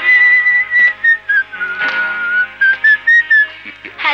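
Film background music: a whistled melody of held, slightly wavering notes that steps down in the middle and climbs back before ending, over a soft instrumental accompaniment.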